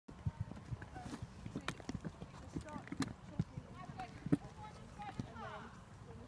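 Hoofbeats of a New Forest pony on a sand arena: an irregular run of knocks and thuds, with faint voices behind.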